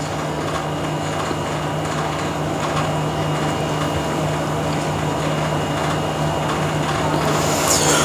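Steady low hum over constant background noise, with no voice, and a brief high falling squeak near the end.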